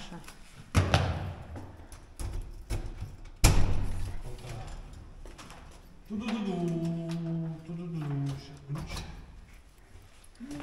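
An apartment front door being unlocked and pushed open: two loud thuds about three seconds apart, the second the louder, each with a short echo.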